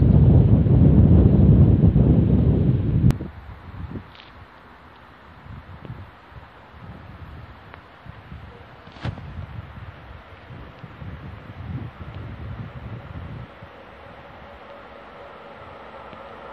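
Wind buffeting a phone's microphone: a heavy low rumble for about the first three seconds that cuts off abruptly with a click, then lighter, intermittent gusts.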